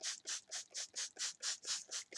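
Trigger spray bottle of plain water pumped rapidly, a quick, even run of short hissing sprays, about six a second, wetting a curly human-hair wig.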